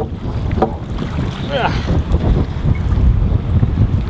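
Wind buffeting the microphone, a steady low rumble, with a couple of short clicks near the start and a brief voice about one and a half seconds in.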